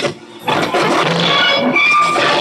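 Live noise improvisation: a loud, dense wall of distorted electronic noise with scattered held tones, cutting out abruptly for a split second near the start and then surging back.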